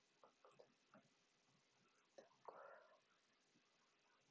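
Near silence with a few faint computer mouse clicks in the first second. About two and a half seconds in, a short soft whisper comes from the narrator.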